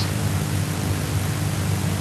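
Steady hiss of recording background noise with a faint low hum underneath.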